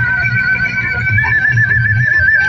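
DJ music played loud from truck-mounted loudspeakers: a high, warbling lead melody with a fast trill over a pulsing bass beat, the melody stepping up in pitch about a second in.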